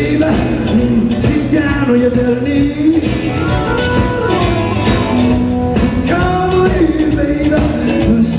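A blues band playing live, with electric guitar, bass guitar and drums, and a melody line that bends in pitch over a steady beat.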